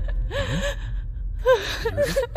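A woman crying: a few short gasping sobs, the loudest about one and a half seconds in, over a low steady hum.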